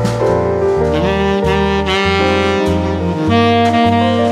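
Background music: a saxophone melody with gliding notes over a bass line that changes note about every half second.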